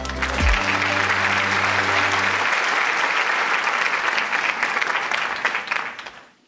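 An audience applauding over the final held chord of a short music sting; the chord ends about two and a half seconds in, and the applause dies away near the end.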